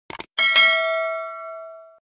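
Subscribe-button animation sound effect: a quick double mouse click, then a bell ding about half a second in that rings and fades away over about a second and a half.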